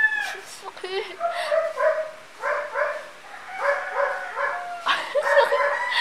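A young woman laughing in several runs of short, quick bursts.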